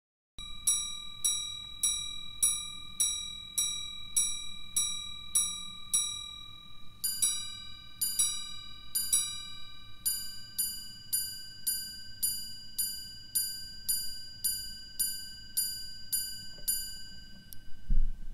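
Watch minute repeater chiming the time on two gongs: a run of single strikes on the low gong, then three ding-dong pairs on both gongs for the quarters, then a long run of strikes on the higher gong for the minutes. Each strike rings clear and bell-like, about two a second. A short dull knock comes at the very end.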